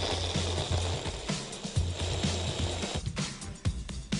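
Background music over an electric blender running for about three seconds, then cutting off: fruit being blitzed for a raspberry coulis.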